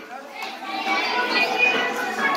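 A Telugu Christian worship song sung by a group of voices with music, picking up again after a short pause at the start.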